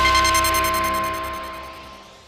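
Closing theme music of a TV news programme ending on one held chord that fades out.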